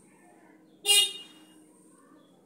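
A single short, loud horn-like toot about a second in, fading quickly.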